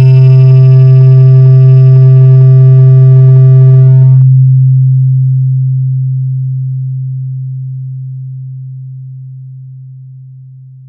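Loud, sustained deep electronic bass tone from a DJ 'hard bass' sound-check mix, held steady on one low pitch. Its brighter, buzzier upper tones stop about four seconds in, leaving a pure deep hum that slowly fades out.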